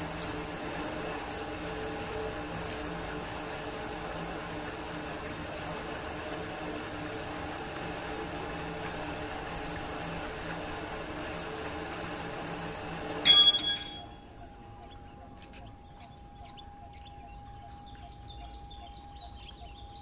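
Submersible water pump running, a steady hum with rushing water. About 13 s in there is a sharp metallic clack and the running noise stops abruptly, leaving only a faint steady tone.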